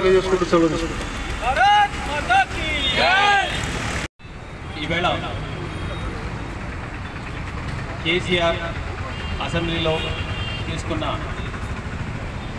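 A man's voice speaking into a handheld microphone over a steady low background rumble. The sound cuts out abruptly for an instant about four seconds in, then resumes with quieter, broken speech.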